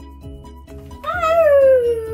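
A young child's long, wavering vocal sound, cat-like, starting about a second in, sliding down in pitch and then swooping up and back down. It is loud, over background music.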